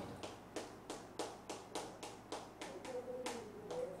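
Chalk tapping and scratching on a chalkboard as a short word is written by hand, a quick uneven series of sharp clicks, about three a second.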